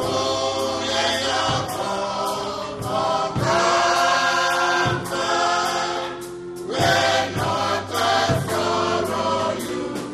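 Gospel choir singing with music backing, with percussion hits through it.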